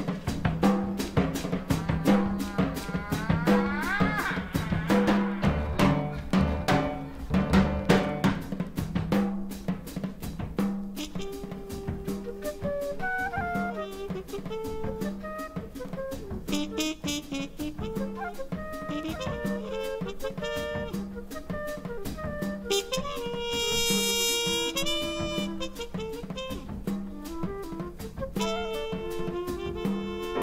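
Live jazz quintet playing the opening of a tune: drum kit with snare and rimshots, bass and piano, with a horn carrying the melody. It is louder and busier for about the first nine seconds, then thins to a lighter melodic line over the drums.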